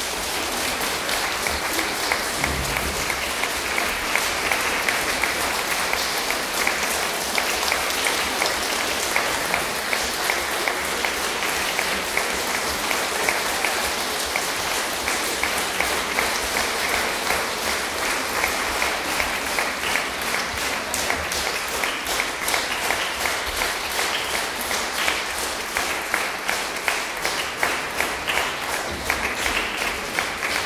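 Audience applauding steadily after a string quartet performance; in the last third the individual claps stand out more.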